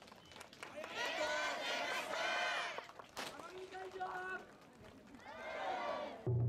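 Cheer squad voices in drawn-out shouted calls, Japanese school ouendan style: a long strained shout about a second in, a steadier held call in the middle, and another shout rising near the end.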